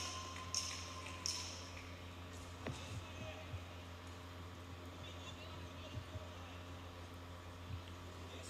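Live sound of an MMA bout in a cage: three short, sharp hissing bursts in the first second and a half, then scattered dull thuds of fighters' feet and strikes, over a steady low hum and faint voices.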